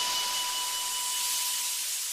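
Steady recording hiss, strongest in the treble, with a thin steady whistle-like tone that fades out near the end: background noise of an old recording between songs.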